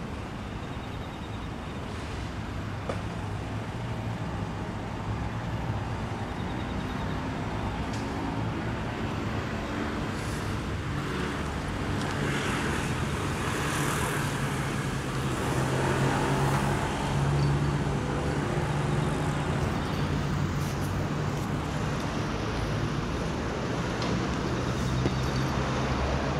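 Motor traffic: a low engine hum over a noisy road sound, growing louder from about halfway through as a vehicle comes closer.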